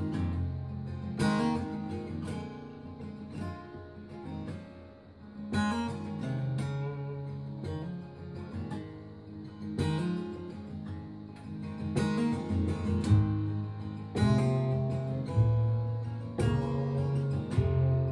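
Acoustic guitar playing alone, picking and strumming chords with a moving bass line on its low strings, as a song's instrumental introduction.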